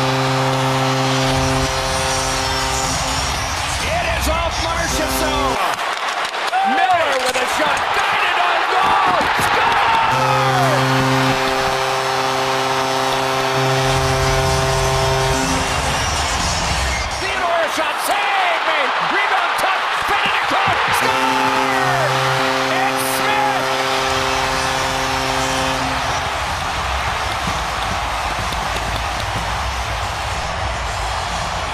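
Arena goal horn blaring in three long stretches about ten seconds apart, over a loud cheering, whooping hockey crowd.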